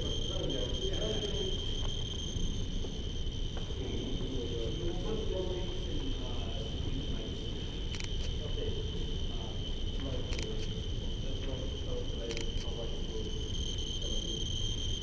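Handheld Geiger counters registering radiation: a steady high-pitched electronic tone sounds throughout, with a few sharp clicks about eight, ten and twelve seconds in.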